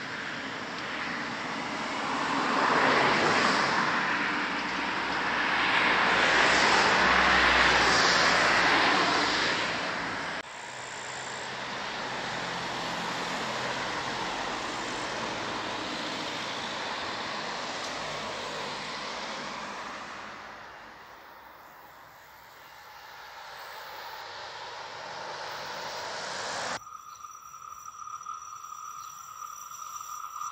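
Road traffic noise: vehicles passing along the road, a swelling and fading rush of tyres and engines, loudest in the first ten seconds, with abrupt changes where the recording is cut.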